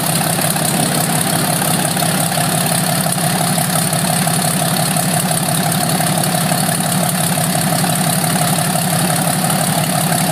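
Fairchild PT-19's Ranger six-cylinder inverted inline air-cooled engine idling steadily with its propeller turning, just after being started by hand-propping.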